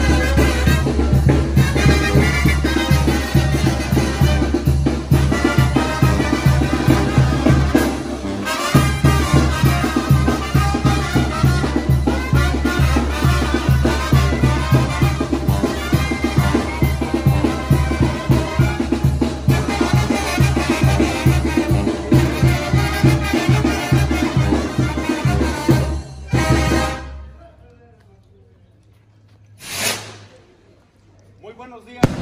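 Lively Latin brass-band music with trumpets over a steady drum beat, which stops about 27 seconds in. A single sharp bang comes at the very end.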